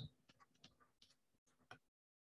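Near silence with a few faint, short ticks: a stylus tapping on a tablet screen.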